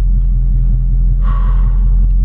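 Steady low rumble of a car's engine idling, heard from inside the cabin. About a second in comes a breathy exhale lasting under a second, from someone winded.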